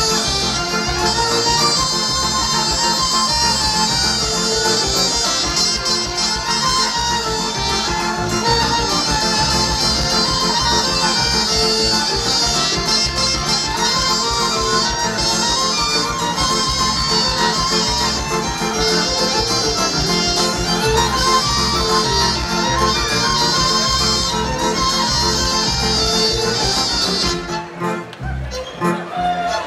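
Live folk band playing an instrumental passage: two fiddles carry the tune over guitars, a small mouth-blown wind instrument and a strapped-on drum keeping a steady, driving beat. The music breaks off at the very end.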